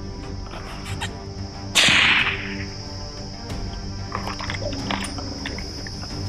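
A single hunting rifle shot about two seconds in, fired at an impala, sharp and then dying away over about half a second, over background music.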